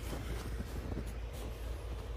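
Faint footsteps crunching in snow over a low, steady rumble.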